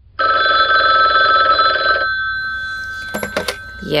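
Telephone bell ringing once for about two seconds, its ring dying away over the next two seconds, followed by a few sharp clicks as the call is answered.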